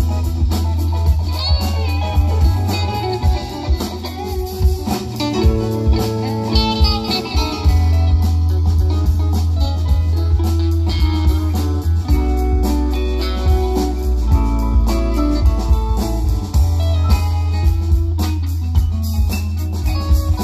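Live rock band playing an instrumental jam, with electric guitars, keyboards, saxophone, bass and drums.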